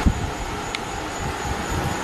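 Steady rushing noise with a few dull low thumps, typical of a handheld camera being moved about in a garage.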